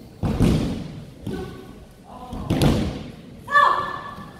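Heavy thuds of bodies and feet hitting tatami mats during aikido throws and falls, two main impacts about a second and a half apart. A short shout comes near the end.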